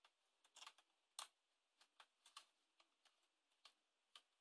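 Faint, irregular small clicks and ticks of a screwdriver turning the screw of a Nerf Firestrike's plastic battery cover, the loudest about a second in.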